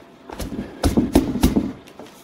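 An instant-coffee jar knocked down onto birdseed mix packed in a plastic cup, tamping it firm: about four quick knocks in the middle, with a fainter one near the end.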